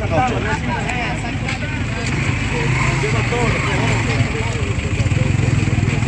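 A vehicle engine idling steadily under indistinct voices of people talking.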